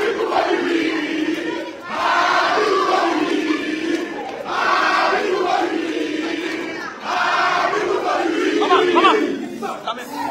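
Groomsmen chanting together: a crowd of men's voices in loud shouted phrases that restart about every two and a half seconds.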